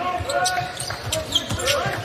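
A basketball being dribbled on a hardwood court, several bounces, with voices in the background.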